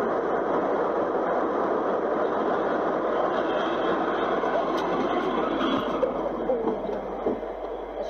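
Steady road and tyre noise with engine drone inside a moving car's cabin, picked up by a dashcam. A faint click comes about five seconds in.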